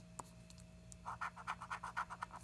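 A coin scratching the coating off a scratch-off lottery ticket. About a second in it starts fast, short back-and-forth strokes, about eight a second.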